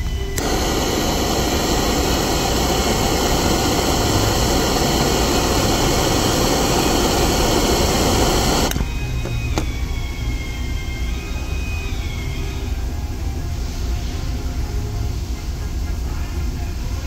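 Handheld gas torch lit with a click and burning with a steady loud hiss for about eight seconds while it reheats the tip of a plastic-welding iron, then shut off suddenly.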